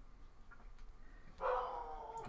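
A dog barks, a loud drawn-out bark that falls slightly in pitch, starting about one and a half seconds in after a quiet stretch.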